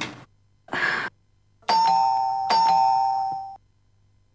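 Electronic doorbell chiming twice in quick succession, each ring a two-note ding-dong, the second starting before the first has faded.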